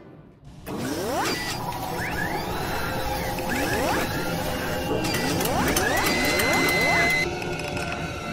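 Logo-sting sound design: mechanical clicking and ratcheting with a series of rising whooshing sweeps over music, then a steady high tone that cuts off about seven seconds in.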